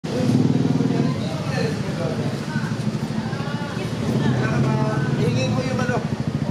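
Street sound: a motorcycle engine running steadily, with people's voices talking over it.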